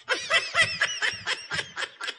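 A person snickering: a quick run of short, even laughs that stops just before the end.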